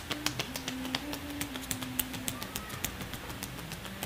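Hands tapping quickly on a person's leg muscles in percussion massage: an even patter of several light taps a second. A faint low hum sounds through the first two seconds.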